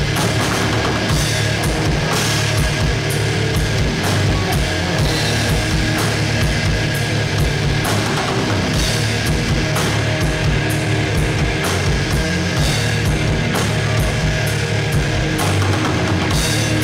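Live rock band playing at full volume: distorted electric guitars, bass guitar and a drum kit keeping a steady, driving beat, heard through the room's PA.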